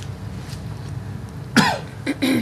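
A person coughs once, sharply, about one and a half seconds in. Before the cough there is only a steady low room hum.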